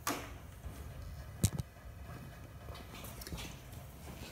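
Quiet room tone with a low steady hum, broken by one sharp click about one and a half seconds in and a couple of fainter ticks.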